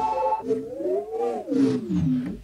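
A loop from the Sound Dust Boom & Bust Kontakt instrument bent with the pitch-bend wheel: its pitch glides up through the first second and then slides back down.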